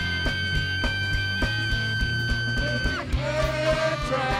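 Live funk band playing, with a steady drum beat and bass line. A long held high note drops away about three seconds in, and a lower held tone follows.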